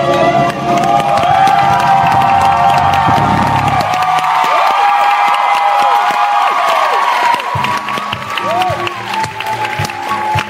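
Live stage musical: cast voices and band hold the final notes of a song while the theatre audience cheers and applauds. The bass drops out for a few seconds midway, then the accompaniment returns.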